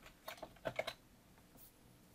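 A few faint keystrokes on a computer keyboard, bunched in the first second.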